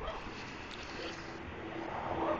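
Quiet outdoor background noise, with a faint steady hum setting in about a second in.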